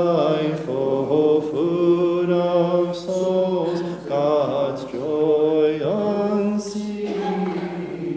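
Unaccompanied liturgical chant of the Maronite rite, sung in long held notes that slide from pitch to pitch over a steady low sung line.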